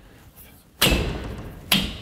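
Two knocks as the corner section of a Hills Everyday Double folding-frame clothesline is tapped by hand into its metal frame arm, the first a little under a second in with a brief ring, the second about a second later.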